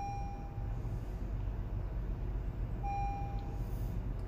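Handheld OBD2 scan tool beeping twice from its built-in speaker as its buttons are pressed: two even electronic tones about three seconds apart, over a steady low hum.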